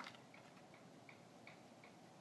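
Near silence with faint, quick, regular ticking, several ticks a second, and a single soft click at the start.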